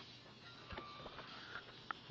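Quiet handling noise: a few soft clicks over a low hiss.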